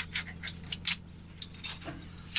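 Tie-down strap hardware, a metal hook and strap, clinking and rubbing as the strap is latched around a truck axle: a handful of sharp light clicks over a steady low hum.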